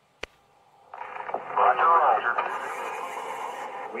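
A single sharp click, then a film soundtrack starts playing from the computer about a second in: a thin, radio-like voice over a steady hiss.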